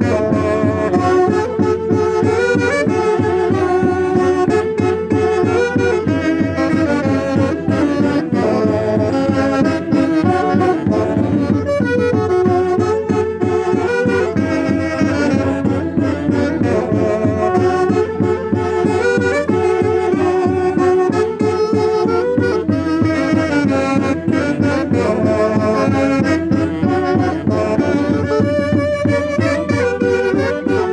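Saxophones playing the melody of a santiago, a festive Andean dance tune from central Peru, continuously and at a steady volume.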